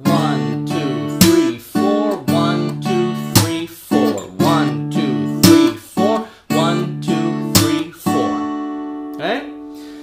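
Steel-string Takamine acoustic guitar played slowly in a percussive fingerstyle pattern: picked bass notes and D-chord shapes, with the bass notes on beat one and a sharp palm slap on the strings on beat three. The last chord rings out and fades near the end.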